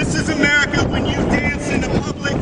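Brief indistinct voices over a loud, steady rushing background noise.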